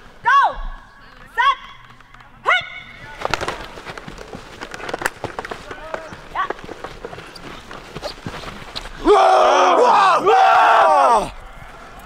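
American football players shouting three short calls about a second apart, like a snap count, then the noisy scuffle of padded players colliding and pushing, with scattered knocks. Near the end several players yell together loudly for about two seconds.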